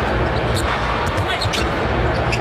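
A basketball being dribbled on an arena hardwood court over the steady noise of the arena crowd.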